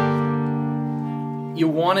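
Steel-string acoustic guitar chord ringing out and slowly fading after a strum; a man starts talking near the end.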